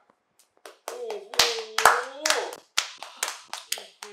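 Hand clapping from a few people, irregular and quick, about five claps a second, as applause at the end of a song, with a drawn-out exclamation of "wow" over it.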